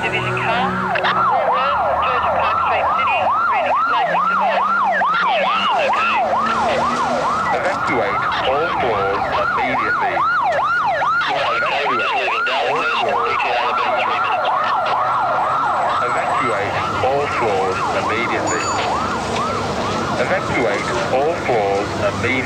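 Electronic alarm sounding through a wall-mounted horn loudspeaker: a loud, rapidly repeating rising whoop, about two and a half sweeps a second, which gets less distinct near the end.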